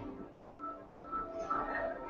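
A sparse series of short beeping tones at several different pitches, each held for a fraction of a second, like keypad or electronic beeps.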